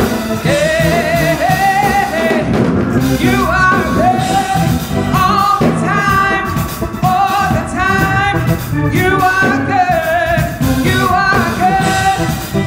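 A women's praise team singing a gospel worship song into microphones, with long held notes over instrumental accompaniment.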